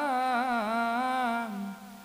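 A man chanting a scripture verse in the melodic style of Assamese Bhagavat path. A single voice holds long notes with wavering ornaments and trails off near the end.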